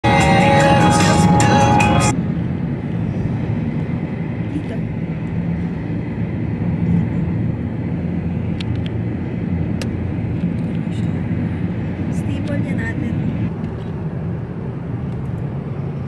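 Steady low rumble of road and engine noise inside a moving car's cabin. It opens with about two seconds of a loud, pitched sound before settling into the rumble, with a few faint clicks.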